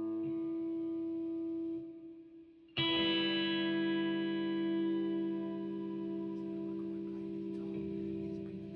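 Electric guitar: a held chord dies away to near silence, then a new chord is struck about three seconds in and rings on, slowly fading.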